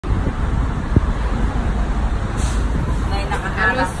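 Tram car running, with a steady low rumble and a single sharp knock about a second in. Voices start near the end.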